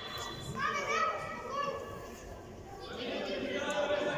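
Children's voices calling out during a youth football game, heard across a large indoor sports hall, in two spells with a lull in the middle.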